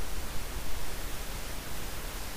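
Steady hiss with a low hum underneath: the background noise of the voice recording, with no other sound.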